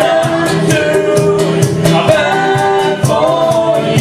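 A live bush band playing a song, with voices singing together over acoustic guitar and double bass and a steady percussion beat.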